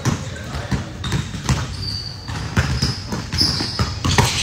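Basketballs bouncing on a hardwood gym floor: irregular thuds that echo in a large hall.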